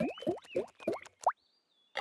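Cartoon plop sound effects: a quick run of about five plops, each rising in pitch, as layers of fruit drop into a glass jar. Then a faint high tone and a sharp click near the end.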